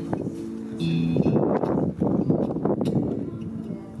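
Acoustic guitar strummed through a small amplifier in an instrumental break of a folk song, with held notes sounding over the strumming and a brief high note about a second in.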